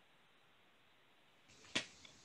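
Near silence, broken about three-quarters of the way through by a single short, sharp click.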